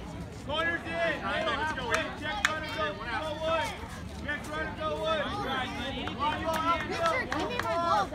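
Several voices talking and calling out at once, indistinct chatter with no clear words, and a single sharp click about two and a half seconds in.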